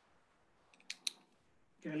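Two quick, sharp clicks in close succession about a second in, over faint room tone.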